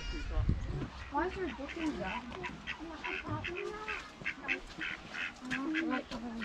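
A flock of waterfowl on a pond calling: many short calls in quick succession, with faint voices underneath.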